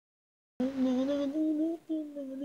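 A single voice humming the opening of an instrumental soundtrack melody a cappella, starting about half a second in with held notes that step slightly upward, and a brief break near the end.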